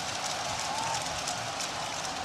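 Steady crowd noise from spectators in a football stadium, an even background hum of the crowd.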